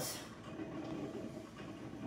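Steady low background hum and hiss of a room, with no distinct sound event.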